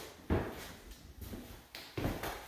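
Footsteps on a bare wooden floor: a few heavy thuds, the loudest shortly after the start and another near the end.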